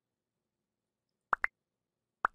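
Silence, then two quick rising 'bloop' pops close together near the end: a cartoon pop sound effect from an animated like-and-subscribe button overlay.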